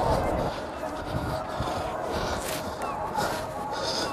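Indistinct voices with outdoor background noise, and a few short, sharp sounds in the second half.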